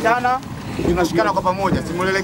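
Several people shouting and calling out in raised voices, a repeated call with no clear words.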